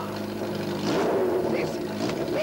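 A motor vehicle's engine running, steady for about a second and then revving up and down, the youths' engine that they are told to switch off.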